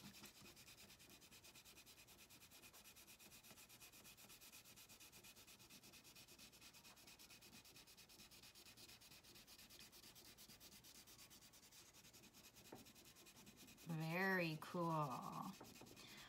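Wax crayon rubbed rapidly back and forth on paper, shading in a coloured area: a faint, steady scratchy rubbing. A woman's voice speaks briefly near the end.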